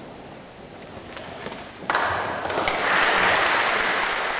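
Audience applause that breaks out suddenly about two seconds in and swells, after a choir has finished singing.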